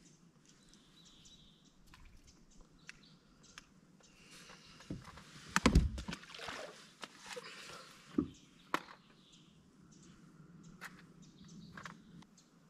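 Water splashing and sloshing beside a boat, with a few sharp knocks on the boat's deck. The loudest burst of splashing and knocks comes about halfway through.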